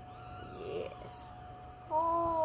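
Faint high dog whimpers, then near the end a newborn Yorkshire terrier puppy gives a louder wailing cry with its mouth wide open. A steady faint hum runs underneath.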